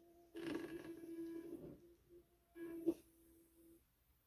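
Energized NEMA 14 stepper motor on an A4988 driver giving a faint steady hum of one pitch that breaks off briefly a few times and stops just before the end. Handling noise and a sharp click come around the three-second mark as the motor is picked up.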